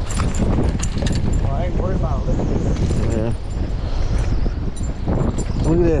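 Wind rumbling on the camera microphone, with scattered clicks and knocks as a hooked bass is brought to the boat and lifted out by hand.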